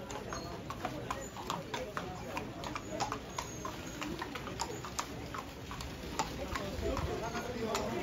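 Horses' hooves clip-clopping as several horses walk past at a slow pace, sharp irregular clicks a few times a second, over a murmur of voices.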